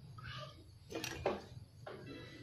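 Light handling noise of an empty metal tin can, with two sharp clicks close together about a second in.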